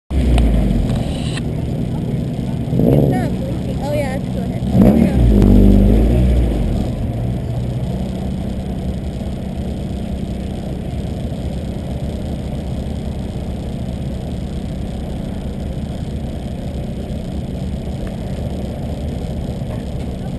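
A car engine idling steadily, with brief indistinct voices. Two short low rumbles, the louder one about five seconds in, stand out over the idle.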